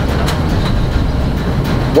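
Combined concrete mixing-and-pumping machine running: a steady, loud low rumble with faint irregular rattling.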